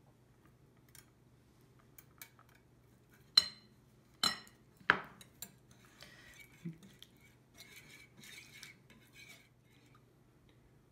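Utensils clinking sharply against a glass mixing bowl three times, then a wire whisk beating a miso and oil dressing in the bowl, softer and irregular.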